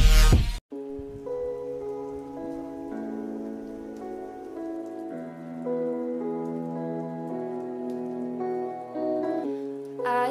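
A loud electronic intro sting cuts off abruptly about half a second in, followed by a soft instrumental music intro of held keyboard chords that change every second or so, with a faint crackle beneath.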